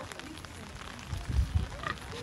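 Domestic pig grunting at close range: a few short, low grunts a little past the middle.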